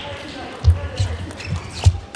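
Table tennis ball striking the table and bats: a quick series of sharp knocks, each with a low thud, roughly every third to half a second.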